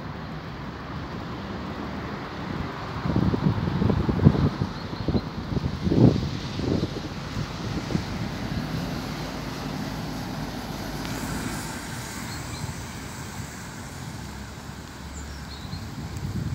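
Outdoor city ambience: a steady hum of road traffic with wind buffeting the microphone, in louder gusts about three and six seconds in.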